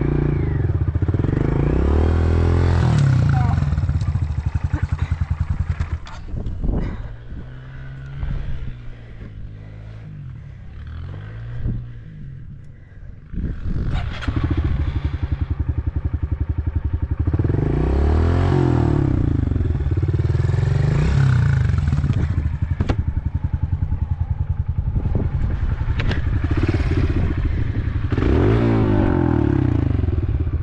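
Trail motorbike engine revving up and down as it is ridden. The engine eases off from about six seconds in, then pulls hard again from about thirteen seconds on, with a few knocks along the way.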